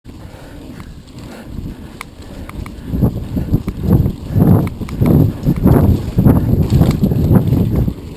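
Mountain bike jolting over a rough dirt trail, heard through a bike-mounted camera: a low rumble of irregular thuds and rattles with wind buffeting the microphone, with a few sharp clicks early on. It gets much louder about three seconds in.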